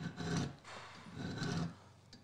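Hand file stroked across the lip of a steel auger bit held in a vise, sharpening it: two rasping file strokes about a second apart.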